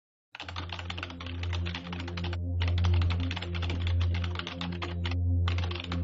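Rapid keyboard-typing sound effect, a dense run of clicks that starts just after a moment of silence and breaks off twice briefly, about two and a half seconds in and about five seconds in, with the clicks keeping pace with text typing out on screen. A low steady drone sounds underneath.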